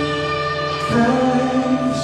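Live worship band music: acoustic and electric guitars holding chords, with singing. The chord changes about a second in.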